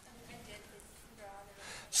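Faint, distant voices of students replying across a classroom, in two short stretches of speech.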